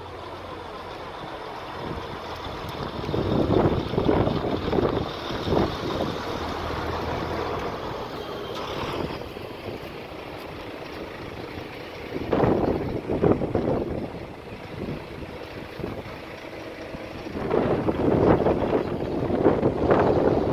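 Wind buffeting the microphone in irregular gusts over a steady background of outdoor noise, with the loudest gusts about three to six seconds in, around twelve seconds, and near the end.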